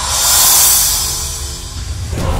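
Trailer music: a rushing swell that peaks about half a second in and dies away, over a steady low drone.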